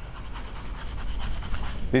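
Chalk scratching against a chalkboard as a word is written by hand, over a low steady room rumble.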